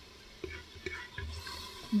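A spatula stirring and scraping thick beef pasanday gravy in a nonstick pot, a few soft scrapes and knocks. The meat is being browned (bhunai) to dry off its water.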